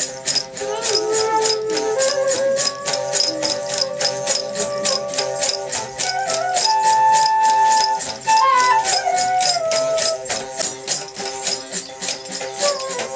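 Traditional folk music played live: a rattle shaken in a steady beat of about four strokes a second under a melody of held notes that slide up and down. The ensemble includes a fretted stringed instrument with a gourd resonator.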